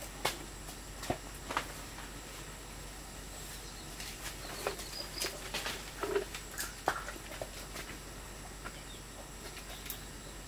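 Leaves rustling and twigs and fruit stems snapping as fruit is picked by hand in a tree: irregular sharp snaps, thickest in the middle and thinning out near the end.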